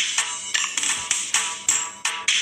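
Garba dance music with a steady percussive beat, about three strikes a second.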